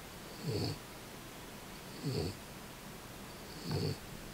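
French bulldog snoring in its sleep, three snores about a second and a half apart.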